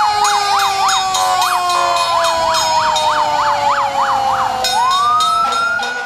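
Fire truck sirens: a fast yelping siren sweeping up and down about three times a second over a slowly falling wail, with a wail winding back up near the end.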